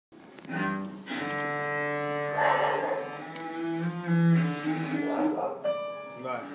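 A cello bowing long held notes, moving to a new pitch a few times, the first change about a second in.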